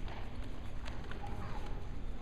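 Bare feet stepping on a foam wrestling mat and hands slapping as two grapplers hand-fight standing: a few short sharp knocks over a steady low rumble of gym room noise.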